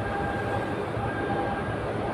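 Steady background room noise with a faint, thin, steady whine, heard in a pause between spoken sentences.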